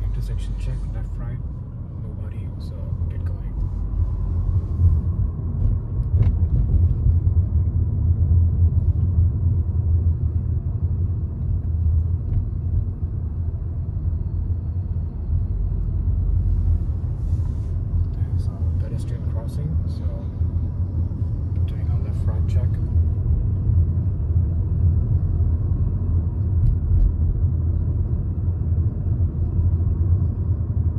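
Low, steady road and engine rumble inside a Honda car's cabin while it drives along a city street, growing louder a few seconds in.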